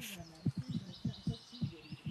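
Small birds chirping faintly in the forest, with a series of soft low thumps in the middle.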